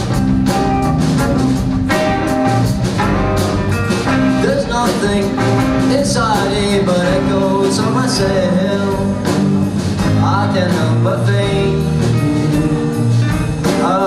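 A live pop-rock band playing an amplified song on drum kit, bass guitar and two guitars, with the drums marking a steady beat in the first few seconds.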